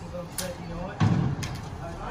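Voices in the background, with a few sharp knocks, the loudest about a second in.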